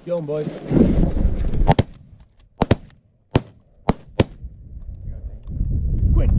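A quick volley of shotgun shots from several duck hunters: about seven sharp reports over two and a half seconds, each with a short echo. Before them come a brief shout and a burst of rustling with wind on the microphone.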